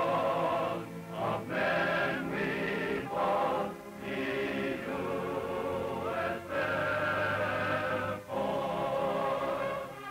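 Film title music: a choir singing long held chords in phrases, with short breaks between them.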